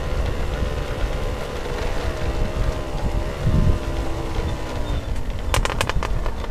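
A small motorcycle engine running steadily under way on a rough track, its pitch wavering a little, with heavy wind rumble on the microphone. A quick run of sharp clicks comes near the end.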